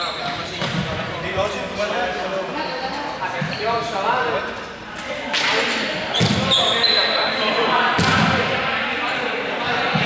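Players' voices and calls echoing in a large sports hall, with balls bouncing on the court floor and several sharp thuds, the loudest a little past halfway through.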